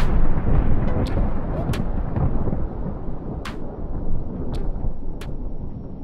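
A deep, continuous thunder-like rumble, loudest in the first second, with scattered sharp cracks over it: a storm sound effect.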